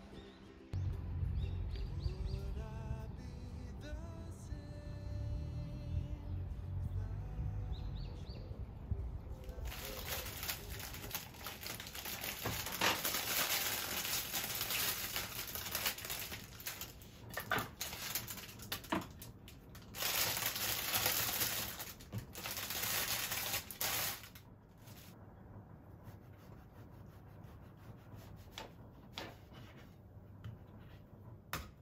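Plastic bread-bag packaging crinkling as it is handled and opened, in stop-start stretches over about fifteen seconds from roughly ten seconds in. A low rumble comes before it, and faint clicks near the end.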